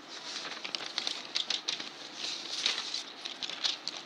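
Irregular rustling and crackling with scattered small clicks, like something being handled close to the microphone.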